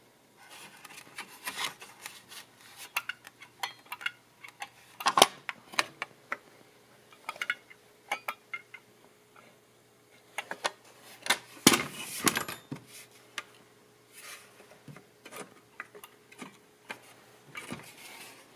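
Homemade spring-loaded steel latch and sheet-metal scooter side cover handled by hand: scattered metallic clicks, clinks and scrapes, with louder clanks about five seconds in and again around twelve seconds.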